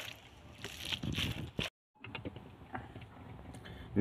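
Wooden pestle mashing crumbled tofu on a plastic plate: a few soft scraping, squashing strokes, cut off by a brief dead gap a little before halfway, then only faint light taps.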